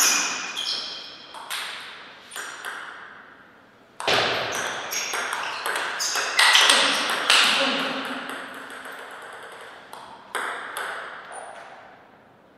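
Table tennis ball clicking off rubber paddles and bouncing on the table in quick rallies. One rally runs through the first few seconds, and a second, longer exchange starts about four seconds in and runs until shortly before the end.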